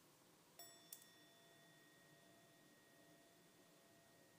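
Near silence, broken about half a second in by a faint struck chime whose several tones ring on steadily, with a short click just after.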